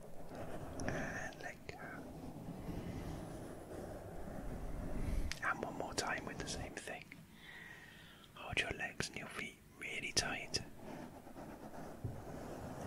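A soft-bristled brush stroked over a foam microphone windscreen. It makes a steady, soft, scratchy rustle for the first few seconds, then turns to irregular sharper crackles in the second half.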